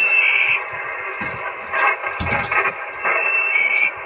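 Two-way marine radio giving out a steady static hiss, with a thin whistle at the start and again near the end. A dull thump comes about two seconds in.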